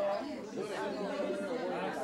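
Chatter of several people talking over one another in a crowded room.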